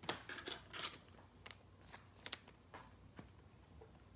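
Trading cards being handled: faint rustles in the first second, then a few light clicks spaced out over the rest.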